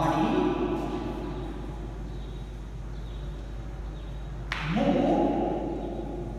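A man's voice in long, drawn-out syllables: one at the start and another about four and a half seconds in that opens with a hiss, with quieter gaps between.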